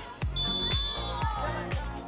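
Background music with a steady beat. About a third of a second in, a single short, high, steady whistle blast lasts under a second: a referee's whistle for the foul in the box.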